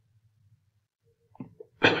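Near silence with a faint low hum, then a brief sharp sound and a man starting to speak near the end.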